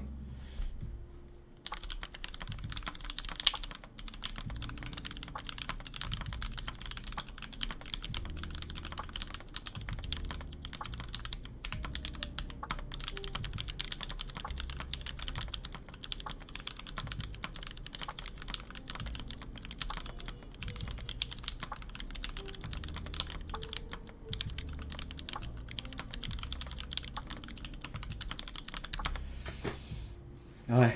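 Continuous fast typing on a Daisy 40 mechanical keyboard built with H1 switches, a dense run of key clacks starting about two seconds in and stopping near the end.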